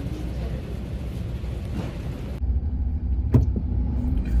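Background noise of a shop aisle, then, after an abrupt cut, the low rumble of a car driving, heard from inside the cabin, with one sharp click near the end.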